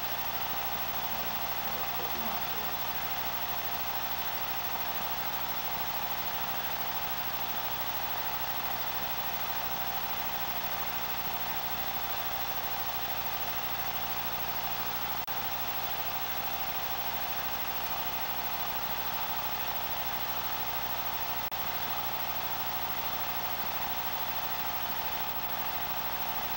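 A steady, unchanging hum with hiss, several fixed tones held throughout.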